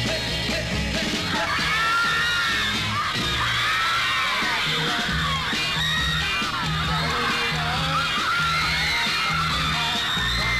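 A 1960s beat-pop band record playing, with a steady bass and drum beat. From about a second in, many high screams from a crowd of teenage fans ride over the music.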